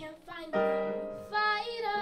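A girl singing a solo into a microphone over sustained piano-keyboard chords, the chord changing about half a second in.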